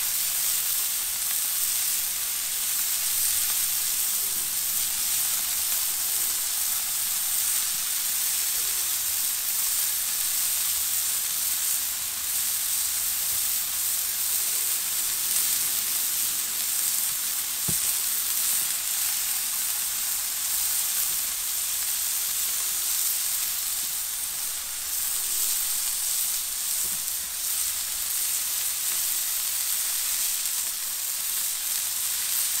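Beef burger patties sizzling steadily on a griddle plate over a charcoal kettle grill, a continuous high hiss of fat frying as cheese slices melt on top.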